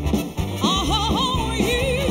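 Live big-band rhythm-and-blues music: a trumpet section plays over bass and drums while a solo voice sings wavering lines that slide and leap in pitch.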